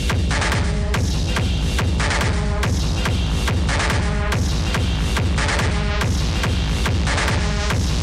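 Hard techno music: a heavy kick drum pounding at an even, fast pace of about four beats a second under a dense bass, with a short synth figure recurring every second or two.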